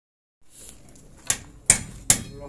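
Two sharp hammer blows about half a second apart, the second one louder.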